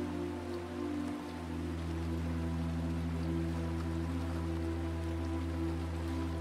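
Soft ambient meditation background music: sustained low drone chords that shift about a second in, over a soft, even, rain-like hiss.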